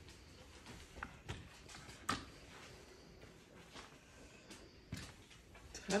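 Forearm crutch tips and a walking boot stepping slowly across carpet and a wooden floor: scattered soft taps and knocks, the loudest about two seconds in.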